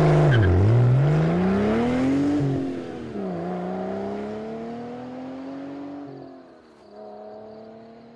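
Sports car engine accelerating away through the gears, its note climbing and then dropping at each upshift, three times, and fading as the car drives off into the distance.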